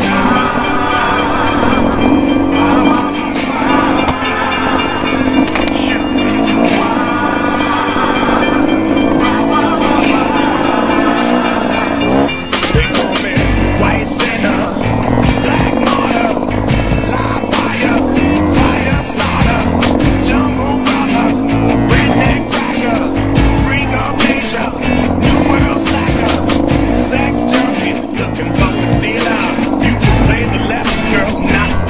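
Music track with singing over a GasGas enduro motorcycle engine running and revving on a rough trail climb, with frequent knocks from the bike bouncing over the ground in the second half.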